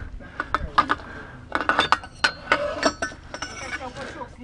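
Metal clinking and clicking as a munition is handled at a launcher: a string of sharp clinks, some with a short metallic ring.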